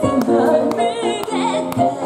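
A woman singing a song into a microphone over a backing track of sustained keyboard notes and a steady beat of about two hits a second.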